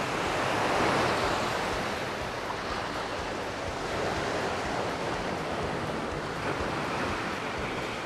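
Small sea waves washing over rocks along the shore, a steady rushing wash that swells a little about a second in.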